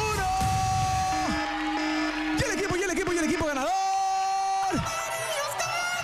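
Long drawn-out shouts, each held at a steady pitch for about a second, over background music, cheering the yellow team's win as time runs out.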